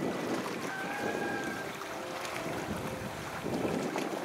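Pool water splashing and sloshing as several seals swim and jostle at the surface, with faint thin tones in the background during the first half.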